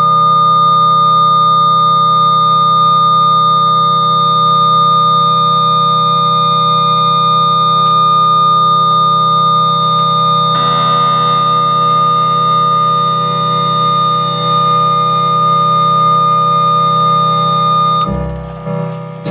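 Loud, unbroken electronic drone of held electric-organ tones, many steady pitches sounding at once, run through effects. About ten seconds in, a harsher, noisier layer joins on top.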